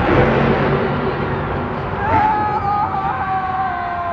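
Monster truck stadium show heard from the stands: a dense crowd roar mixed with a truck engine, then from about two seconds in one high, long yell that slowly falls in pitch, over the crowd.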